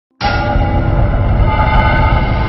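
Music for an animated channel logo intro: a loud, dense swell that starts suddenly a moment in, with held tones over a heavy low rumble.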